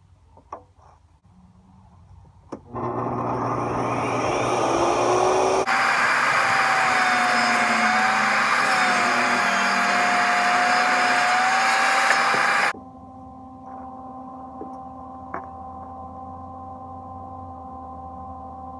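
Ridgid jobsite table saw starting up about three seconds in after a few light clicks, then ripping a wooden strip for about seven seconds, its motor tone wavering under load. It cuts off suddenly near thirteen seconds, leaving a steadier, much quieter machine hum.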